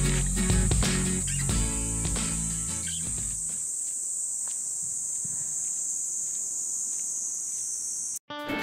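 Guitar music fading out over the first three seconds, under and then leaving a steady high-pitched insect chorus that runs on until it cuts off at the end.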